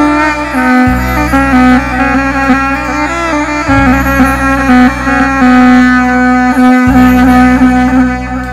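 Middle Eastern instrumental dance music: an ornamented lead melody over a held drone and a steady bass line that drops out briefly about every three seconds.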